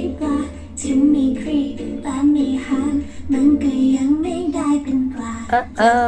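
A young woman singing a Thai pop song with light accompaniment, her voice carrying a flowing melody and ending the phrase with a sweeping slide in pitch.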